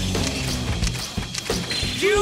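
Dramatic background music with low sustained notes. Several short mechanical clicks sound in the middle, the sound effects of duel disks being readied.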